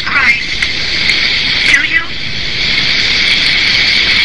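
A woman's voice wailing and shrieking in a high, strained register, made to sound like tormented souls screaming. The sound is sustained and piercing, with wavering cries near the start and again about two seconds in.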